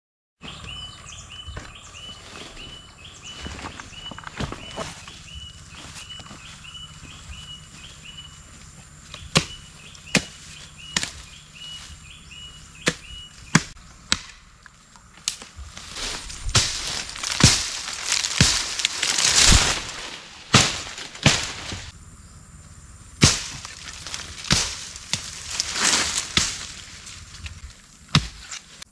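Bolo (itak) blade, made from an old chainsaw guide bar, chopping brush: sharp single strikes scattered through the first half, then a quick run of swishing slashes through vegetation from about 16 s. A high chirp repeats about twice a second in the background for the first half.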